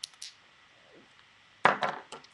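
Glass nail polish bottles being handled: two light clicks at the start, then a louder cluster of knocks and clinks near the end.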